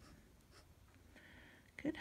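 Glass dip pen nib scratching faintly on notebook paper as a few short characters are written, the main scratch about a second in.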